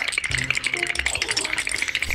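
A fast, even rattling clatter, dense with clicks, laid over music as an edited-in sound effect. It cuts off just after the end.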